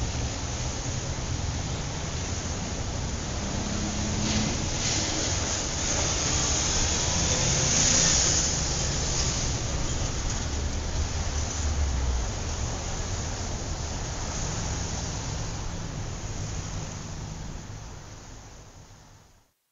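Honda S660 with the top off, driven at highway speed: steady wind and road noise over a low engine hum from its Fujitsubo AUTHORIZE RM exhaust, fading out near the end.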